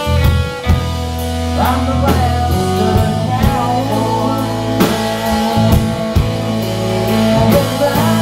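A rock band playing live, with two electric guitars, an electric bass and a drum kit, and a man singing over them.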